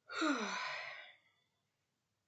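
A woman's long sigh, a breathy exhale with her voice falling in pitch, loud at first and fading out after about a second and a half.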